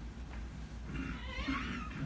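A man taking a sip of water from a cup, with a short noisy sip and breath about a second in, over a low steady room hum.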